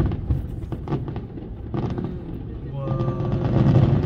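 Fireworks going off overhead: a few sharp bangs over a low rumble. About three seconds in, a steady, sustained tone rises over them.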